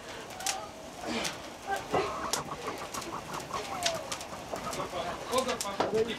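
Burning straw crackling and snapping in a wooden barn loft, with short pitched calls or cries scattered through it.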